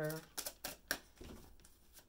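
Tarot cards being handled and drawn from a deck: a few short, crisp card snaps in the first second, then fainter handling noise.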